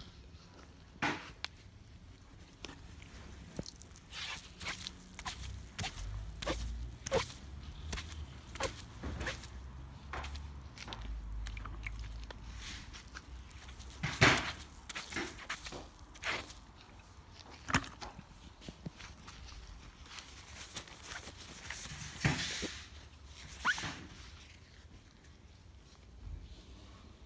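Wet sponge being worked over car door paint to rinse it with water: irregular soft knocks, rubs and brief wet swishes, the loudest about 14 seconds in.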